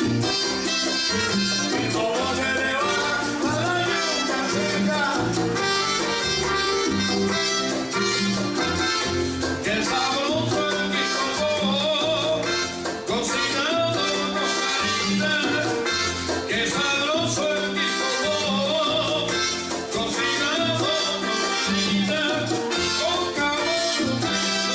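Live salsa-style Latin music led by a Yamaha electronic keyboard, with a steady bass line and an even beat.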